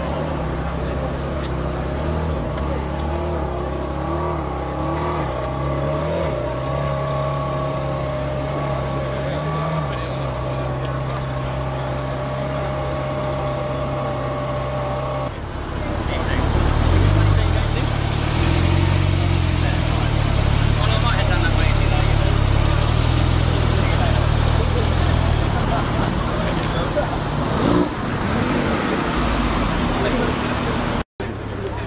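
A Ferrari's engine idling steadily with small blips. After a cut, a louder sports-car engine is revved, its pitch rising and falling, over people talking.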